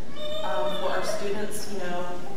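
A woman talking into a microphone: speech only.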